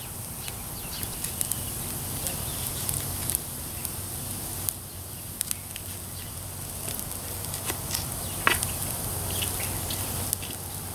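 Wood fire crackling, with scattered sharp pops and one louder crack about eight and a half seconds in.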